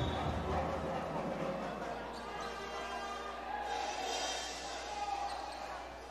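Basketball bouncing on a hardwood court as a player readies a free throw, over the low murmur of an indoor arena crowd.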